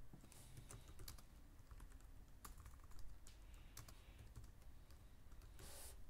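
Faint typing on a computer keyboard: a run of irregular key clicks as a line of text is typed, with a brief rushing noise just before the end.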